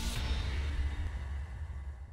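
The tail of an intro logo sting: a low rumble with a faint high shimmer at the start, slowly dying away and fading out at the end.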